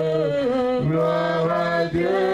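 Worship singing in long, slow, held notes. The pitch slides down about half a second in and breaks off briefly just before the end.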